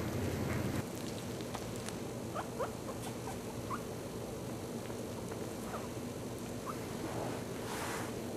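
Very young puppies giving short, high squeaks now and then over a steady background hiss, with a brief rustle near the end.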